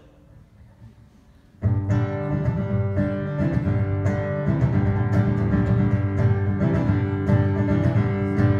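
Acoustic guitar begins playing abruptly about a second and a half in after a short quiet, then continues as the instrumental intro to a song.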